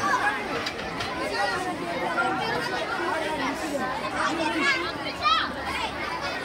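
Chatter of many children's voices talking over one another, with no other sound standing out; a brief high-pitched rising exclamation about five seconds in is the loudest moment.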